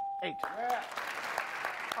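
Studio audience applauding, starting about half a second in, over the fading tail of the game show's score-reveal ding, a single held bell tone.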